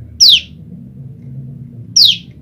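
Female common tailorbird calling: two sharp, high notes, each falling quickly in pitch, the second coming right at the end. These are the calls of a hen separated from her mate, calling for him.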